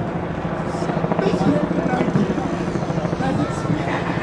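Speech from the rally, deliberately distorted so the words can't be made out, over a steady low hum with a rapid choppy flutter.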